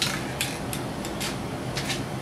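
Several light metal clicks and taps, irregularly spaced, as a steel journal scratch hook knocks against a metal aerosol can.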